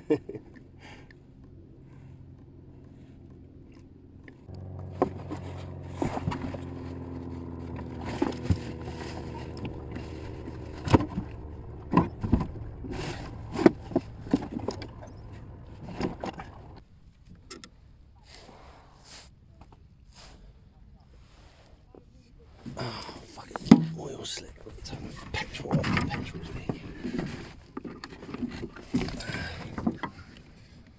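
Irregular knocks and clatter of oars and gear aboard a wooden Mirror dinghy. A steady low hum runs under them from about four seconds in until about seventeen seconds, then drops away.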